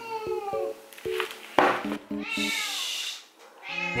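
A house cat meowing in complaint: a long call falling in pitch at the start, a short harsh noise about one and a half seconds in, then a second long call after two seconds. A grumpy cat, over soft background music.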